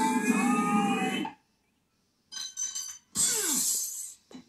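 Cartoon soundtrack from a television: a layered electronic music effect with a rising pitch cuts off a little over a second in. After a short silence come two brief sound effects, the second with a falling pitch near the end.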